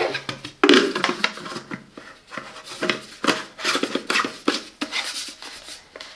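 Plastic paint container being fitted and screwed back onto the spray gun: a series of short scraping rubs and clicks of plastic on plastic.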